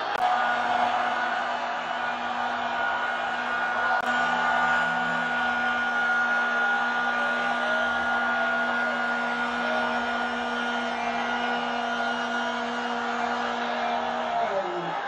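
One voice over the loudspeakers holds a single long chanted note at a steady pitch, over a haze of crowd sound. The note slides down in pitch as it trails off at the end.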